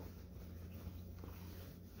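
Quiet room with a steady low hum and the faint rustle of cotton fabric being handled.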